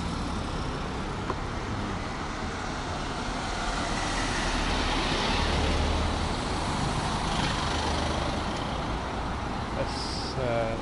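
Road traffic: cars driving past close by on a town street, a steady hum that swells around the middle as vehicles pass.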